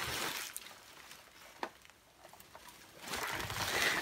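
Bubble wrap and plastic packaging rustling as a heavy object is handled in it, with one light click about one and a half seconds in and a quiet stretch in the middle.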